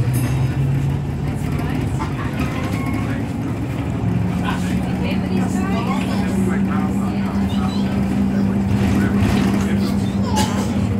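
A bus's engine and road noise heard from inside the cabin while the bus drives along. About four seconds in, the engine's hum steps up to a higher, steady note as it accelerates.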